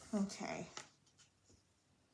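Pencil writing on paper, with a girl's brief low murmur in the first second; after that only a few faint pencil ticks.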